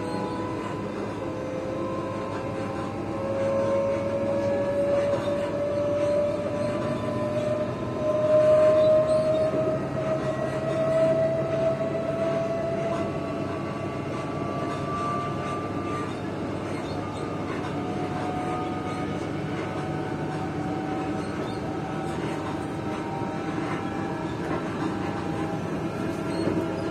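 Electric multiple-unit train heard from inside the carriage: traction motors whining, rising slowly and steadily in pitch as the train accelerates, over the rumble of wheels on the rails. The sound swells loudest about eight to eleven seconds in.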